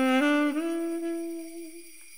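Jazz saxophone phrase: two quick steps up in pitch, then a long held note that fades away near the end.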